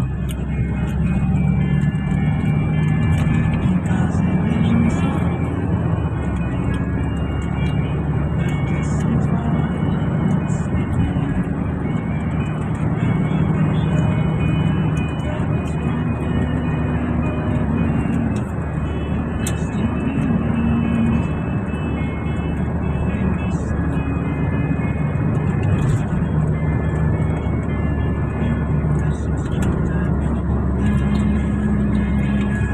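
Cabin noise of a moving passenger van: steady engine and road rumble, with music playing and indistinct voices over it.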